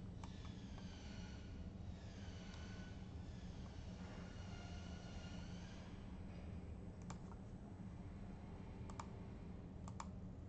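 Computer mouse clicking a few times, with sharp clicks about seven, nine and ten seconds in, over a steady low hum of room and computer noise.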